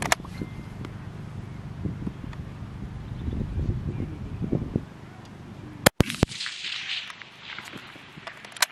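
Wind buffeting an outdoor microphone: a low, uneven rumble that rises and falls in gusts. About six seconds in come two sharp clicks with a brief dropout between them, after which only a thinner hiss remains, broken by one more click near the end.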